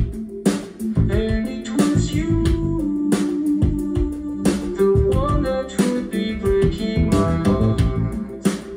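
Recorded music playing through floor-standing hi-fi loudspeakers: a guitar-led track with bass and a steady drum beat.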